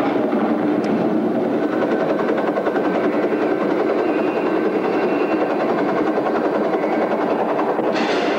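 A steady, dense roar with no clear pitch, played loud through a theatre sound system as a film sound effect.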